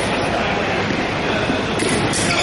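Steady noisy background of a large gym hall during a foil fencing bout. A sharp click comes at the start and two more come near the end, from the fencers' footwork on the hardwood floor or their blades.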